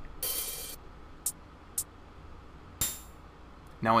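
Sparse, irregular electronic drum-sample hits from the REAKTOR Massive sequencer. A noisy high burst comes near the start, then two short ticks, then a sharper hit with a thin ringing high tone about three seconds in. The gaps come from sample-select modulation landing some steps on empty slots in the sample map, so those steps play nothing.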